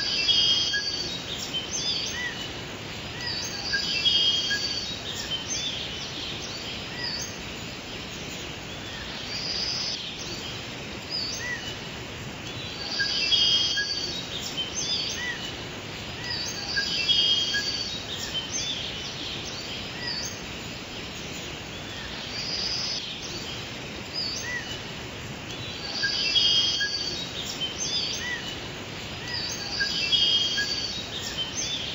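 Birdsong ambience: high bird phrases and short chirps recur every few seconds over a steady background hiss.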